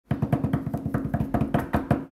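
Rapid, even knocking, about ten strikes a second, over a low steady tone.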